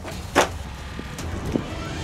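A plastic bottle knocked flying by a knife strike: a sharp crack about half a second in, then a duller knock about a second later, over a steady low rumble.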